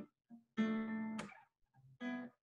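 Acoustic guitar chord strummed and left ringing for under a second, then cut off.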